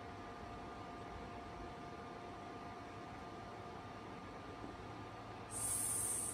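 Quiet classroom room tone with a faint steady hum. Near the end a brief hiss of about a second cuts in.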